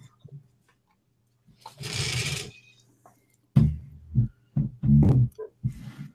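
Handling noise close to the microphone: a brief rustle about two seconds in, then a run of loud bumps and rubs in the second half as a headset earpiece is fitted and things on the desk are moved, over a faint steady electrical hum.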